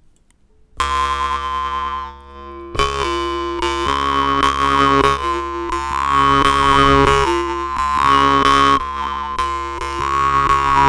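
A Dmitry Babayev munnharpa (Norwegian-style metal jaw harp) being played: it comes in about a second in with a steady drone and a shifting overtone melody above it. After a short break around two seconds it continues with regular plucks.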